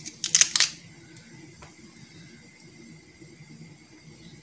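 A knife scrapes through a peeled carrot in one short, sharp burst about half a second in, cutting out its tough core. A single faint click follows, over a low background hum.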